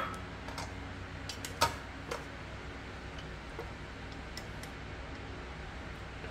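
Sparse light clicks and taps of wooden chopsticks against a stainless-steel Thermomix bowl as cooked chicken is scraped out onto a plate, with one louder tap about one and a half seconds in. Under them runs a faint, steady low hum.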